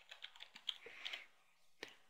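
Faint computer keyboard typing: a quick run of light key clicks, then one sharper single click near the end.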